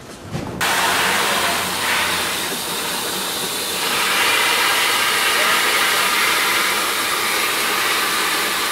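Water running from a garden hose into a plastic watering can: a loud, steady rush that starts suddenly about half a second in.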